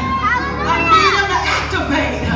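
A woman preacher's voice through a microphone and PA, raised into a chanting, sung style with long sliding pitches, over steady low backing music.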